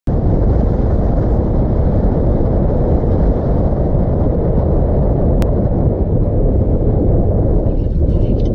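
Wind rushing over a microphone on the outside of a moving car, with the car's road noise: a loud, steady low rumble. A single short click about five and a half seconds in.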